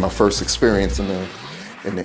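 A man speaking English in the first half, over faint background music. In the second half a single tone glides steadily upward.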